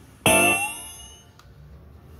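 A single bright, bell-like ringing note struck about a quarter second in, with a tone that slides upward, fading away over about a second.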